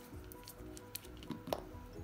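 Soft background music with a few faint small clicks and handling sounds as a gel nail polish bottle is unscrewed and its brush is drawn out against the bottle neck.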